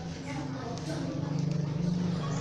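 Faint voices at a distance from the microphone, with a low, held chanting tone from about a second in.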